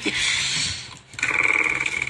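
A small motor whirring with a steady high whine, starting about a second in, after a short burst of rustling noise.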